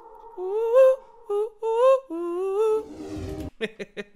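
A voice humming a wordless melody in short phrases that slide up and down in pitch. Near the end it gives way to a brief dull thump and a few sharp clicks.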